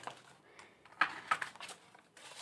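Paper bills being handled: a few short, crisp rustles, three close together in the second half.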